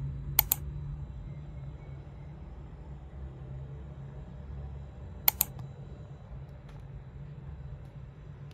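Steady low hum of room ambience, broken twice by a sharp double click, about half a second in and again some five seconds later.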